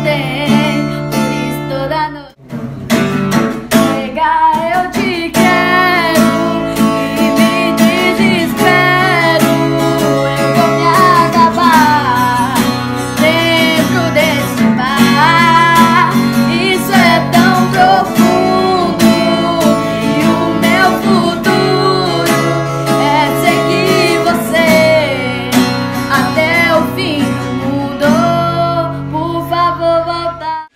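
A girl singing a piseiro song over a strummed acoustic guitar, with a brief break about two seconds in.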